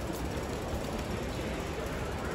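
Steady rumbling noise from the phone's microphone moving through a large indoor mall, with the even hubbub of the hall behind it.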